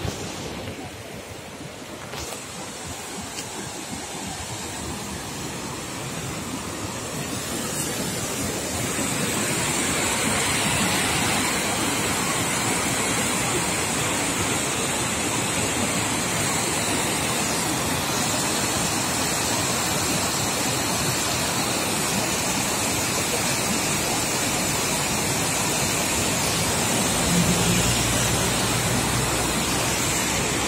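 Rushing white water of a swollen, muddy mountain river pouring through rapids and over a weir: a steady hiss that grows louder over the first several seconds, then holds. A low hum joins near the end.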